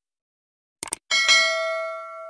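A quick double mouse-click sound effect just before the middle, followed at once by a bright notification bell ding that rings on and slowly fades.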